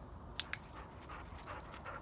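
A dog-training clicker clicks twice in quick succession about half a second in, marking the dog heading in on a recall. Faint scattered sounds of the dog follow as it runs in over gravel.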